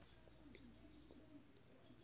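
Near silence: faint room tone with a low, wavering tone that comes and goes, and a few faint light ticks.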